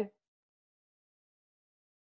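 Dead silence after the tail of a spoken word at the very start.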